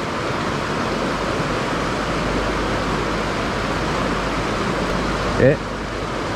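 Steady rush of a mountain stream running over rocks.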